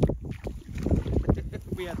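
Wind buffeting the microphone in uneven gusts, a low rumble that comes and goes.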